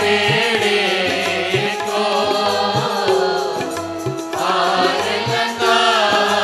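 Sikh devotional kirtan: voices singing a chant-like hymn together over a held drone and a regular drum beat, about two beats a second.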